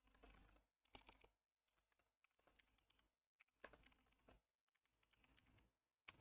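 Faint typing on a computer keyboard: irregular runs of key clicks with short gaps between them.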